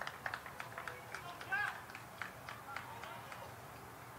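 Faint distant voices with a quick run of short, sharp chirps, about three or four a second.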